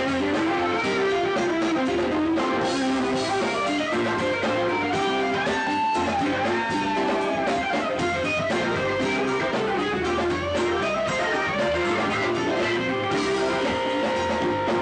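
Electric guitar lead played live with a band behind it. Partway through there is a bent note.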